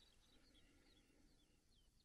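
Near silence, with a few faint, short, falling high chirps scattered through it.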